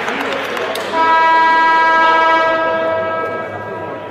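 Arena end-of-half horn: a steady, pitched blast that starts abruptly about a second in and fades away over about two and a half seconds. It signals the end of the first half of a handball match.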